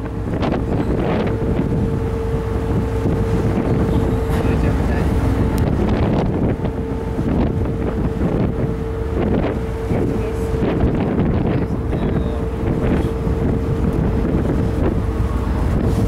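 Wind buffeting the microphone on a ship's open deck, over the steady drone and hum of the ship's engines.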